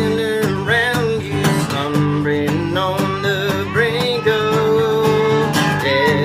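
Acoustic guitar strummed steadily under a man singing a hymn, with a toddler blowing a harmonica.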